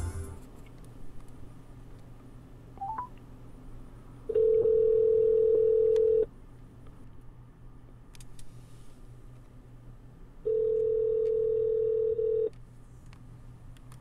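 Telephone ringback tone played through a Mercedes E-Class's hands-free speakers while an outgoing Bluetooth call connects: two steady rings, each about two seconds long, about four seconds apart. The number is ringing and has not been answered.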